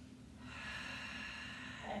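A person's long, audible breath, lasting about a second and a half, between spoken cues.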